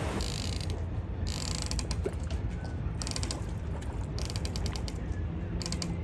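Rapid mechanical clicking in five short bursts, each about half a second long, over a steady low rumble.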